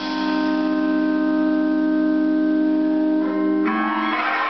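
Electric guitar holding one sustained chord with no drums. It gives way near the end to renewed guitar strumming.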